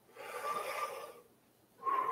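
A man breathing audibly close to the microphone during a slow meditation breath: one soft breath in the first second, then another beginning near the end.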